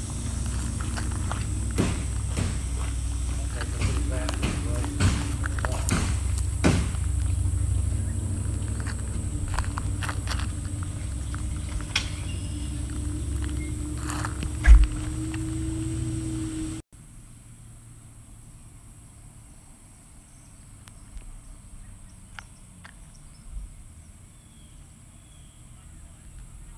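Outdoor handheld recording: a steady low rumble with irregular scuffs and knocks, like footsteps on dirt. About seventeen seconds in it cuts off suddenly to a much quieter outdoor background with a few faint bird chirps.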